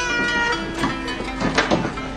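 A baby fussing with short, whimpering, meow-like cries over soft background music of held notes.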